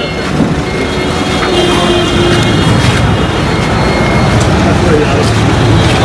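Steady traffic and crowd noise: road vehicles running, with indistinct voices of people talking.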